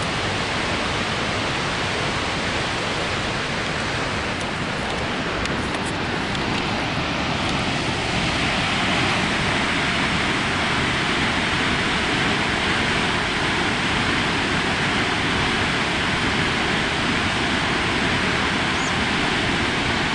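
Steady rushing roar of Snoqualmie Falls, a large waterfall pouring into its gorge; the rush grows a little louder and brighter about eight seconds in.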